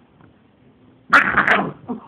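A dog barks once, a short loud burst about a second in, after a quiet start.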